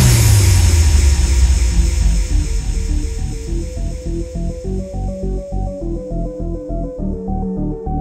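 Frenchcore DJ mix: a deep bass note slides down at the start while the high end fades away over the next few seconds. This leaves a stepping synth melody of short notes over a rapidly pulsing bass, a stripped-back breakdown.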